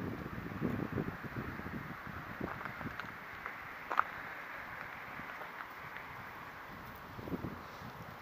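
Wind buffeting the microphone, a gusty low rumble and hiss, with a single short click about halfway through.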